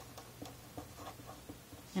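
Sharpie felt-tip marker writing on paper: a quick series of short, faint strokes as words are written out.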